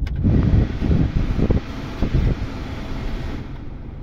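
Cabin A/C blower fan running at a high setting, a steady rush of air from the dash vents that starts just after the beginning and drops away about three and a half seconds in, over a low rumble from the idling diesel engine.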